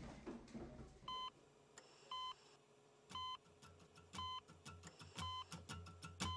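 Heart-monitor beep: a short electronic tone repeating about once a second, five times, over a low hum that comes in about halfway through. Fading music is heard in the first second.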